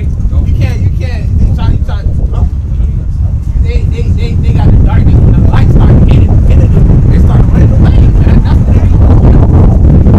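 Wind buffeting the microphone: a loud, fluttering low rumble that grows louder about halfway through, with voices talking faintly underneath.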